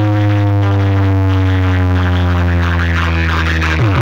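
Electronic DJ track played loud through a large speaker stack of bass cabinets and horn loudspeakers: a long, held deep bass note with tones slowly sliding down above it, changing just before the end.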